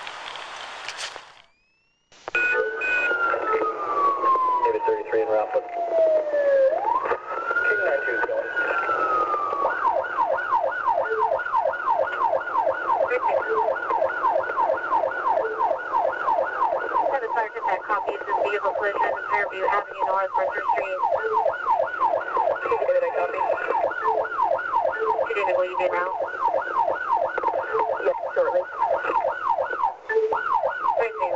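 Police car siren: a slow wail that falls and rises again, then switches about ten seconds in to a fast yelp sweeping up and down about three times a second.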